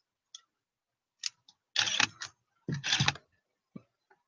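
Camera shutter firing as stop-motion frames are taken: a faint tick, then a few short bursts of clicking, the loudest about two and three seconds in.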